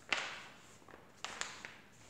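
Paper workbook pages being handled and turned: a sharp rustle just after the start that fades over about half a second, then a few short paper clicks after about a second.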